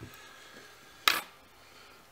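A single sharp metallic clink about a second in, from a small metal fly-tying tool handled at the vise.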